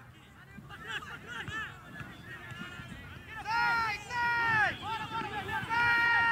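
People shouting: faint chatter, then from about halfway a run of four loud, long, high-pitched yells, each rising and falling in pitch.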